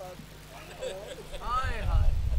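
A man's voice speaking faintly, then a low rumble that swells up over the last half second.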